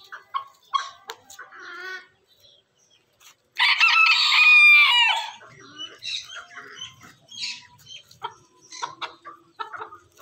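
Millefleur booted bantam rooster crowing once, a loud high call of about a second and a half near the middle. Short soft clucks come before and after it.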